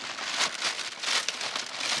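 Plastic carrier bag crinkling and rustling in uneven bursts as a hand rummages through it for a small part.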